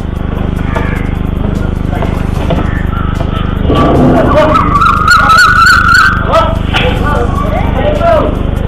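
Scooter engine idling steadily, with people's voices over it; about halfway through a high, wavering voice rises above the engine for a couple of seconds.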